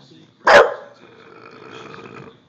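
English bulldog giving one loud bark about half a second in, followed by a fainter drawn-out sound.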